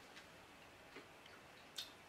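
Near silence: room tone with a few faint clicks, the clearest one near the end.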